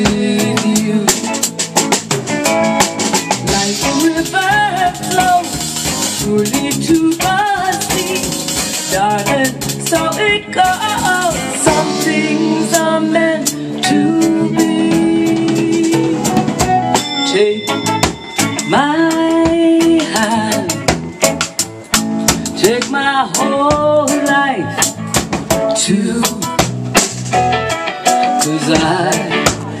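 A live band playing: drum kit with cymbal and drum hits keeping a steady beat, with guitar, bass and keyboard, and a woman singing a melody over them.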